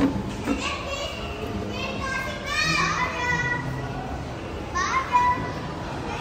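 Children's voices calling out in high-pitched shouts several times over a steady background murmur of a busy play area.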